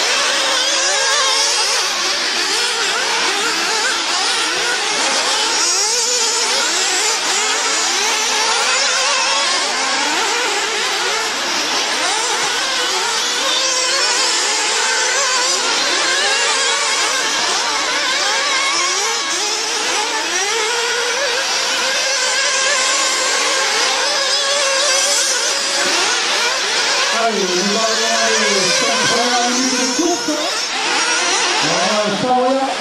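Several 1/8-scale nitro RC buggy engines revving up and down around the track, many overlapping high-pitched whines rising and falling as the cars accelerate out of corners and lift off for the turns.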